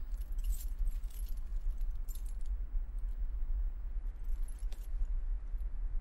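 A steady low rumble, with a few faint metallic clinks of chain links scattered through it.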